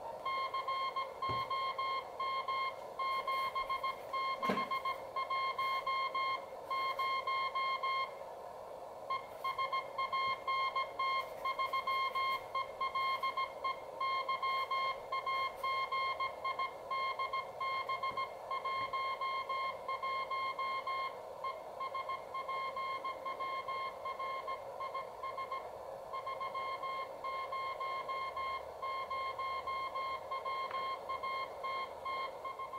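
Morse code (CW) signal received on a homemade 20/40 m CW QRP transceiver: a single high beep keyed on and off at a steady sending pace over a steady bed of band hiss, with one short pause a little past the quarter mark.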